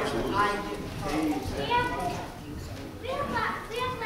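Indistinct voices of people talking, among them children's voices.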